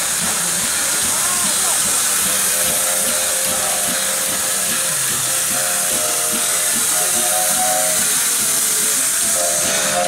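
Steam hissing steadily from under a live steam locomotive, with music playing in the background from a few seconds in.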